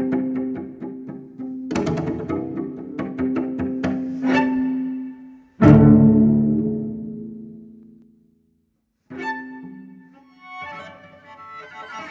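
Solo cello playing contemporary concert music: repeated sharp strokes over a held low note, then one loud accented note that rings away over a couple of seconds. A short silence follows, then a busier, higher passage.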